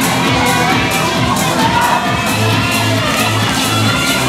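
Dance track played loud over the hall's loudspeakers with a steady beat, under an audience cheering and shouting. In the second half, four bass pulses sound in time with the beat.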